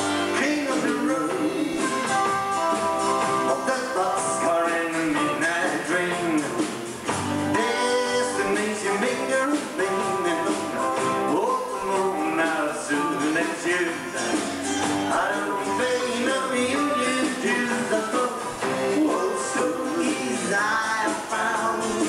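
Live country band playing a song with electric guitars, bass and drums.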